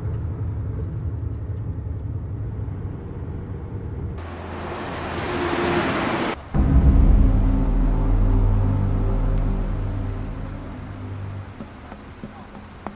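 A coach bus's engine rumbles in the cabin. About four seconds in, a vehicle rushes along the road with a rising whoosh that cuts off suddenly. A deep, louder low rumble with held low tones follows and fades toward the end.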